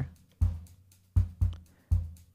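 Programmed kick drum and hi-hat from an EZdrummer 2 drum loop with the snare taken out. Four kick hits, each dying away quickly, with light hi-hat ticks between them.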